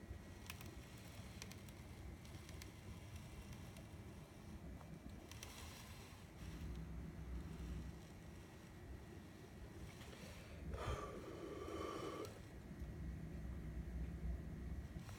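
Faint low rumble and handling noise from a handheld phone camera being moved, with scattered light clicks, and a brief noisy sound lasting about a second and a half about eleven seconds in.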